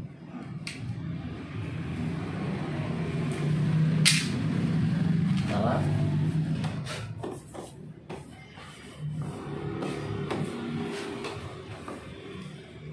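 A low engine-like rumble swells to its loudest around the middle and then fades. Over it come scattered sharp clicks and taps as a plastic chrome door-handle cover is handled and pressed against the car door.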